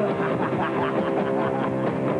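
Punk rock band playing loud, with electric guitar over a fast, steady drum beat.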